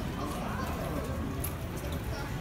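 Footsteps on a hard floor while walking, amid the murmur of a crowd's chatter.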